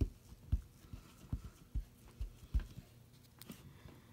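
Clear acrylic stamp block pressed and rocked down onto card stock on a tabletop: a series of soft low thumps, about two a second, for the first two and a half seconds, then a single light click near the end as the block comes away.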